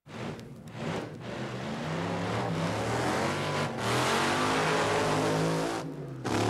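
Recorded car engine revving, starting abruptly out of silence and climbing in pitch over the next few seconds.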